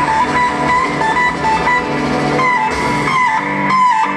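Live rock band playing a slow song, led by an electric guitar that holds a high note and bends it down and back up several times over sustained chords.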